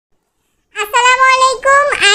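A high-pitched, child-like voice starting about three quarters of a second in, in a sing-song delivery with long held notes.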